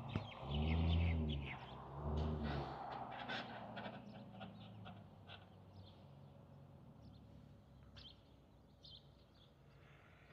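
Small birds chirping repeatedly in short, high calls, mostly in the first few seconds. Two louder, low, drawn-out pitched sounds come about half a second and two seconds in, each rising and then falling in pitch.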